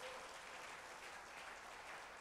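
Faint, steady applause from a church congregation.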